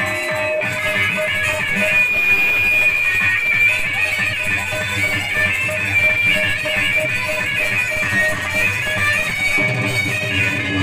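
Amplified live band music through PA speakers, with an electronic keyboard carrying a high melody line of held and ornamented notes over a steady rhythmic accompaniment.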